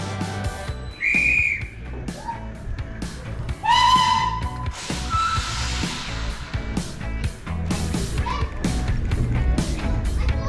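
Background music with a steady beat. Over it, a short high whistle sounds about a second in, then a steam locomotive's whistle, lower and longer, near four seconds in.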